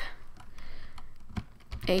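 Computer keyboard keys clicking as a word is typed: a handful of separate keystrokes, unevenly spaced.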